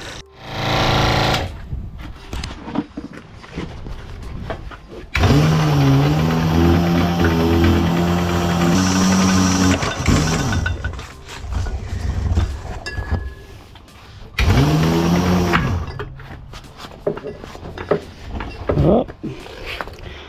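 Electric rewind motor of a spray-hose reel winding in the hose. It runs steadily for about five seconds, starting about five seconds in, then runs again briefly near three-quarters of the way through, rising and falling in pitch as it starts and stops.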